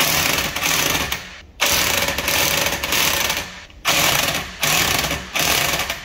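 Impact wrench run in five bursts, the first two long and the last three short, as it drives and tightens the wheel bolts while the wheel spacer is fitted.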